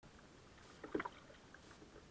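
Kayak paddling: faint splashes and drips from the double-bladed paddle's blades dipping in the water, with one louder stroke sound about halfway through.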